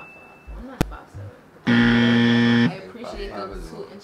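A game-show buzzer sound effect, one flat buzz lasting about a second in the middle, marking a wrong answer. A sharp click comes just before it.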